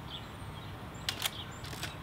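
Quiet outdoor background noise with a low steady rumble and faint bird chirps, broken by a quick pair of sharp clicks about a second in.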